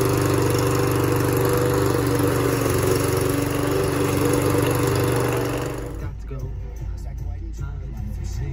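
Mountfield petrol lawn mower engine running steadily at a constant speed, just pull-started after several tries. It cuts off suddenly about six seconds in, and music with a man's voice follows.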